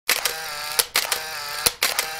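Camera shutter sound effect: sharp shutter clicks in quick groups of two or three, with a steady mechanical whir between them like a film winder.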